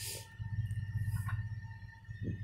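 Low, steady rumble of a vehicle's engine heard from inside the cabin, with a faint steady tone above it.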